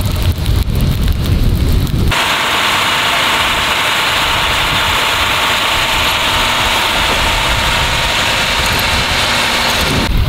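Wind rumbles unevenly on the microphone beside the burning brush. About two seconds in it cuts sharply to a fire engine running steadily, a constant hiss with a faint hum.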